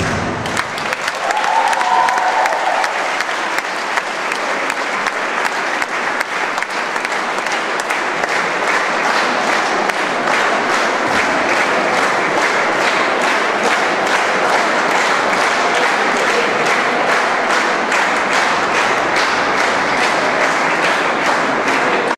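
Audience applauding in a hall as the dance music stops. After several seconds the clapping falls into a steady rhythm, a few claps a second.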